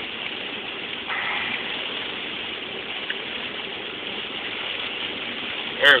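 Heavy rain on a moving car and its tyres on the soaked road, heard from inside the cabin as a steady hiss of water, swelling slightly about a second in.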